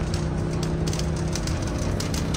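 Steady low mechanical hum in an underground car park, one constant low tone over a dull rumble.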